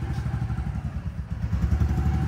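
Motorcycle engine running as the bike moves off slowly, with a quick, even low pulse from its exhaust.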